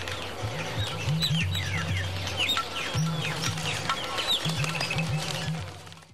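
Film soundtrack of many birds chirping and whistling in quick, falling calls over low sustained music notes that stop and restart.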